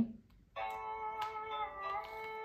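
A children's sound book's built-in sound module playing a calm melody of held notes after its page button is pressed. The music starts about half a second in.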